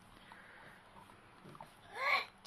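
Mostly quiet, with faint small sounds from a baby in a high chair. Near the end a louder baby vocalisation starts, rising in pitch.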